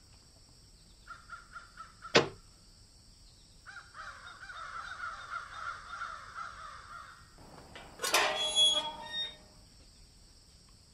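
Birds calling: a few short calls, then a longer run of rapidly repeated calls. There is a single sharp click about two seconds in and a short noisy sound near the end.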